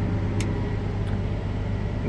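Steady low machine hum inside the cab of a Case IH X250-series combine, with one short click about half a second in.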